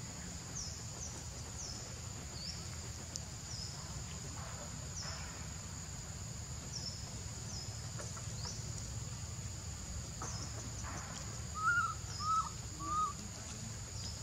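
Outdoor ambience: a steady high insect drone with frequent short, high, falling bird chirps over a low rumble. Near the end come three short rising-and-falling calls in quick succession, the loudest sounds here, from an animal that cannot be named.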